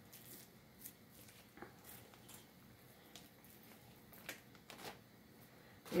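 Faint, scattered rustles and clicks of handling: thin raw beef slices peeled off a foam tray and dropped one at a time into a plastic zip-top bag, which crinkles as it is held open.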